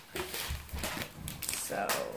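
Rustling of a disposable diaper's soft nonwoven sheet as it is turned over and unfolded in the hands, with a dull low bump about half a second in.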